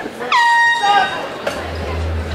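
An air horn sounds one short, loud blast about a third of a second in, signalling the end of the fight; music with a heavy bass beat starts about a second and a half in.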